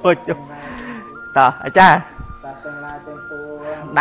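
A man's voice, partly speaking and partly drawn out into long held sung notes that step from pitch to pitch, like a melodic chant.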